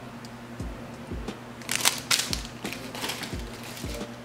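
Clear plastic bag crinkling in a few short bursts as it is handled, with several soft low bumps between them.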